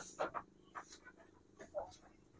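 Goats eating cut grass: a few faint scattered rustling and munching noises.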